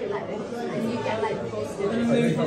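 Indistinct chatter of several voices in a busy restaurant dining room.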